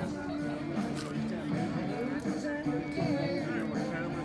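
Music playing, with people's voices and chatter around it.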